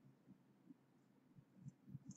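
Near silence: room tone with a few faint, soft low taps.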